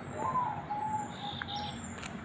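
A bird calling: one long, clear note that starts a little higher and then holds steady for over a second. Faint high chirps sound above it.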